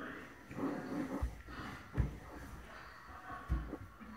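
Handling noise from a phone swinging on a length of yarn: three dull low thumps as the microphone is knocked and jolted, with faint breathy sounds between them.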